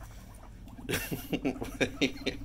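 Guinea pigs eating romaine lettuce, with a brief rustle and a quick run of crisp crunching clicks starting about a second in. Under them runs a faint low pulsing buzz, a guinea pig's rumble.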